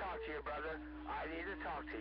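Talk received over a CB radio and heard through its speaker, with a steady tone under the voice that drops in pitch about half a second in, over a low hum.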